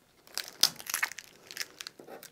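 Oracal 651 adhesive vinyl being weeded with tweezers: a quiet run of irregular short crackles as small cut pieces are peeled off the backing sheet.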